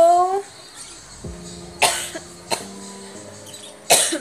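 A woman coughing: sharp single coughs at about two seconds in and half a second later, with another right at the end, from a lingering cough she is still getting over. Background music with held notes plays under it.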